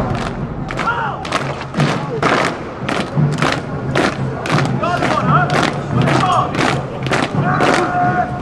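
Marching boots of a military band on cobblestones after the music stops: a steady beat of steps, about two a second, with crowd voices faintly behind.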